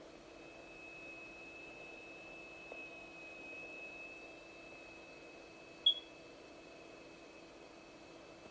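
Faint, steady high-pitched tone of a steel plate set vibrating by a crystal driver, holding a standing-wave sand figure, with a lower steady hum beneath it. A short sharp beep sounds once about six seconds in.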